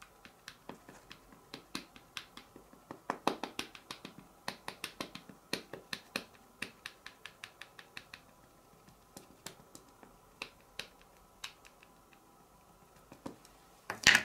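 Versamark ink pad dabbed repeatedly onto a clear stamp mounted on an acrylic block: quick, light plastic clicks, several a second, thinning out in the second half as the stamp is inked up.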